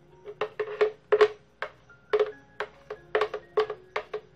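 A quick irregular run of sharp taps and knocks, three or four a second: a spoon knocking and scraping against a plastic blender jug to empty the last of a thick batter. Faint background music runs underneath.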